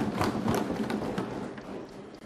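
A crowd of seated members clapping and tapping on their desks after a speaker's line, a dense patter of many small strikes that dies away over about two seconds.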